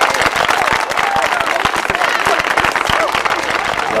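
Applause and cheering from a group of people: many hands clapping in a dense, irregular patter, with a few voices calling out over it.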